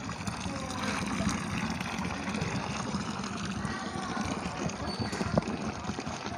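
Water pouring from a fountain spout into a marble basin, a steady splashing trickle.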